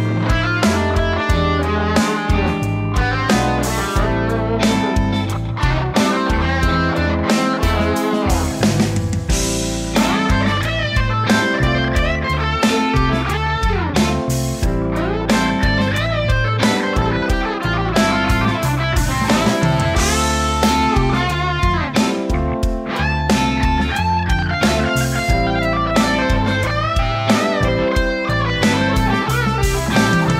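Electric guitar played through an overdrive pedal into a clean amp channel for a Marshall-style crunch, soloing with string bends over a 12-bar blues backing track.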